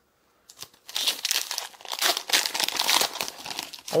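Foil Pokémon TCG booster pack wrapper crinkling as it is torn open and the cards are pulled out, starting about half a second in and thickening into continuous crackling.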